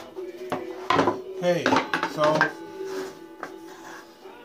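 Plywood pieces clattering and knocking as they are picked up and laid down on a table saw's metal top, a cluster of knocks in the first half or so, with a song playing underneath.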